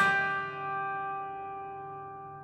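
Grand piano chord struck sharply at the very start, then held and left to ring, fading slowly.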